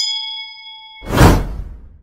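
Subscribe-button animation sound effect: a notification-bell ding rings out and fades over about a second, then a loud whooshing burst about a second in dies away near the end.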